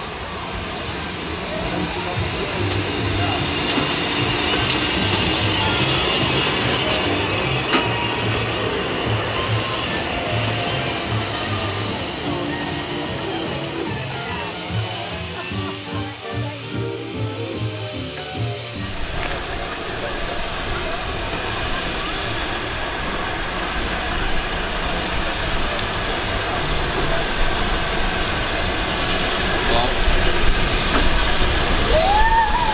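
Music with a steady stepped melody, mixed with a strong steam hiss from a steam locomotive standing at the platform and crowd voices. A little past halfway the sound cuts abruptly to the locomotive's lower rumble and hiss.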